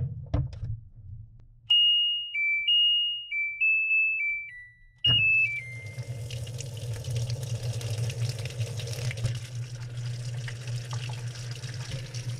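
Front-loading washing machine playing its electronic start-up tune, a short run of beeped notes stepping down in pitch. About five seconds in, water starts rushing into the drum over a low hum as the wash cycle begins to fill.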